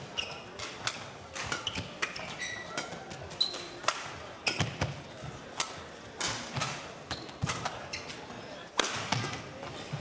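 Badminton rally: sharp racket strikes on the shuttlecock and thuds of footwork come at irregular intervals, about one a second, with short shoe squeaks on the court between them. The sound carries the echo of a large hall.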